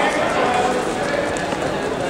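Unintelligible overlapping voices of people calling out, echoing in a large gym, over the scuffing and stamping of wrestlers' feet on the mat.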